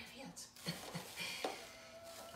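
A man's voice in soft, short fragments, trailing off from laughter. A faint steady tone starts about one and a half seconds in.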